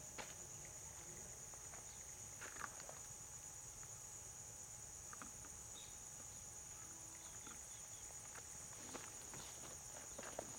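Crickets or other insects chirring steadily in a high-pitched drone, with a few faint short clicks and chirps scattered through it.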